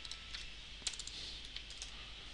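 Computer keyboard keystrokes: a short, uneven run of faint key taps, the sharpest a little under a second in, as text is typed into a field.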